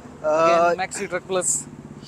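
A man talking, with a vehicle engine running underneath; its low, even pulsing comes through in a pause near the end.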